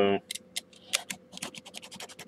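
Craft scissors snipping at cello tape on the top of a cardboard toy box: a few short, scratchy clicks, coming closer together near the end.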